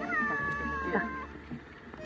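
A single high-pitched cry, held for about a second and falling slightly in pitch, then fading away.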